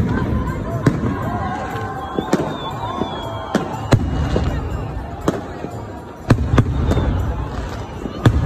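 Aerial fireworks bursting overhead: sharp, irregular bangs about once a second, over the voices of a crowd.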